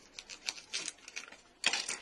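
Light clicks and crinkles of a small foil sachet of instant yeast being handled on a stone countertop, with a short louder rustle of the packet near the end.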